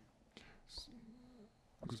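Near silence with a faint, soft voice: a couple of breathy, whisper-like sounds and a brief low hum, then speech begins at the very end.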